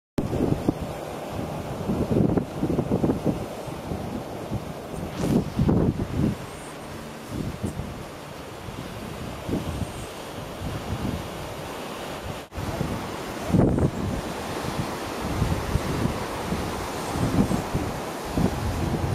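Wind buffeting the microphone in irregular low gusts over a steady rushing background.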